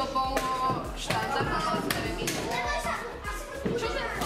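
Children's voices chattering over fast chess play, with repeated sharp clicks of wooden pieces being set down and chess clocks being pressed.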